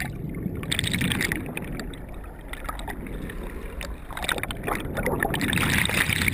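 Water bubbling and churning around a camera held underwater, heard muffled, with scattered small clicks and knocks. It grows louder over the last couple of seconds.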